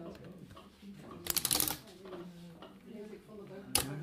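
A handmade wooden loom clattering as it is worked: a half-second burst of rapid rattling ticks about a second in, then one sharp click near the end.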